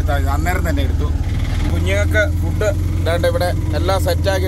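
Auto-rickshaw engine running while the vehicle is under way, a low steady rumble with an even beat that changes about a second in, heard from inside the passenger cab with voices over it.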